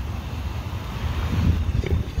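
Wind on the microphone: a low, uneven rumble with faint hiss above it.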